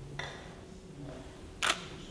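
A camera shutter clicks once, sharp and very short, about one and a half seconds in, against quiet room tone.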